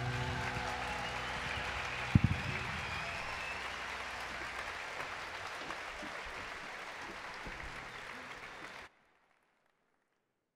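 Large audience applauding, slowly dying down, with two sharp thumps about two seconds in. The applause cuts off suddenly near the end, leaving near silence.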